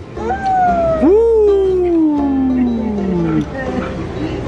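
A dog howling: long pitched howls that slide slowly downward in pitch, overlapping, then stop about three and a half seconds in.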